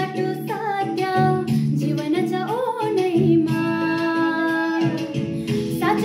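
A woman singing solo over musical accompaniment with guitar, holding long notes with some wavering and sliding in pitch.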